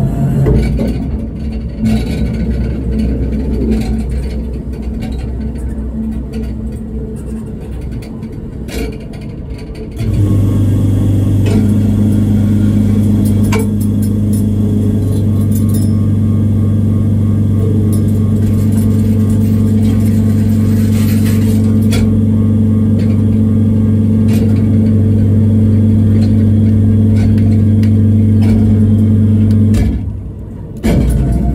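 A meal vending machine's internal mechanism working: uneven mechanical whirring and clicks at first, then a steady low hum from about a third of the way in that cuts off suddenly near the end, as the meal box is brought down into the delivery chute.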